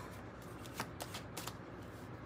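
A tarot deck being shuffled by hand: a few short, faint card snaps clustered through the middle.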